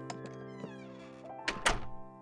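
Soft music with held notes and a falling run of high notes, then a bedroom door shutting with a double thunk about a second and a half in.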